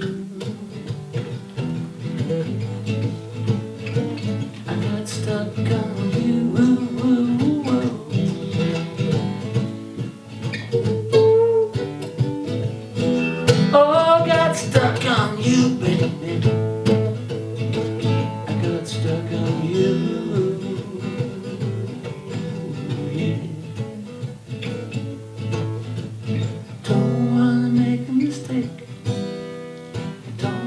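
Acoustic guitar strummed steadily, with a man singing over it; his voice rises in a long held line about halfway through.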